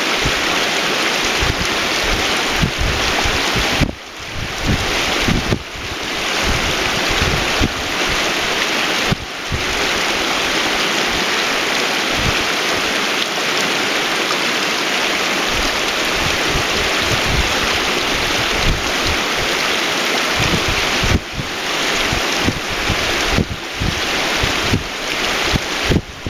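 Shallow, fast mountain creek rushing over stones, a steady loud rush of water, with gusts of wind rumbling on the microphone.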